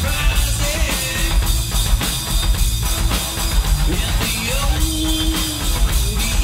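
A live rock band plays loudly and steadily, with a drum kit's kick and snare driving under electric bass and electric guitar.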